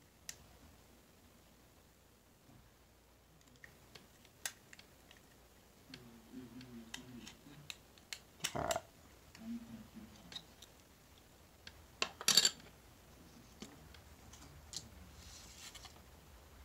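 Coins and cardboard 2x2 coin holders being handled by hand during repacking: scattered light clicks, with two louder brief handling noises about halfway through and about three-quarters of the way through.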